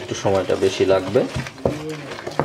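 Spoon stirring a thick herbal paste in a stainless steel bowl, with a few sharp clicks of the spoon against the bowl in the second half.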